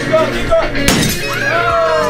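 Glass smashing: one sharp crash a little under a second in. It is followed by a long voice sliding down in pitch, over background music.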